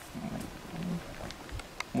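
Faint low rumble with a few soft clicks, and a man twice giving a short low hesitation hum in a pause mid-sentence.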